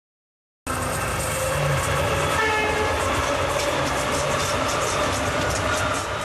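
A passenger train rushing past: wheels running on the rails with a steady rumble and rapid clatter, cutting in suddenly after a brief silence, with a short horn note about two seconds in.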